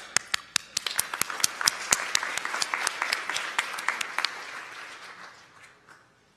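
Audience applause: a wash of clapping with several loud, sharp individual claps standing out, beginning suddenly and dying away over the last second or two.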